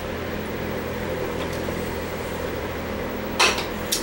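Steady low electrical hum in a shop room. About three and a half seconds in, one short loud burst of noise, then a smaller one just before the end.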